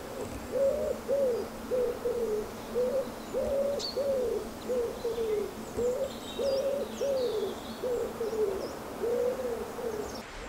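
A pigeon cooing: low, soft coos about two a second, in repeating phrases that each carry one longer, stressed note. Faint high bird chirps come in around the middle.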